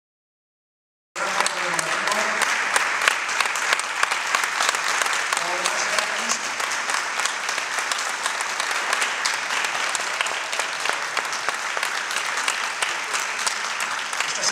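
Theatre audience applauding: dense, steady clapping that begins abruptly about a second in, with a few voices briefly heard over it twice.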